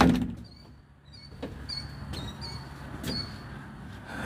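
A glass-panelled cabin door shuts with a sudden thump at the start. A steady low hum and a series of short high chirps about every half second follow.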